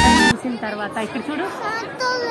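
Background music cuts off abruptly a moment in, followed by indistinct chatter of several voices in a large indoor space.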